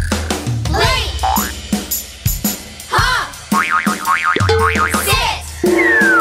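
Cartoon boing sound effects over children's backing music: wobbling springy pitch sweeps about a second in and again around three seconds in, then a quick run of bouncing up-and-down chirps, and a falling whistle near the end.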